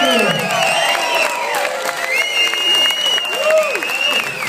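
Concert audience applauding and cheering at the end of a song, with shouts and whoops throughout and a long high whistle from about two seconds in.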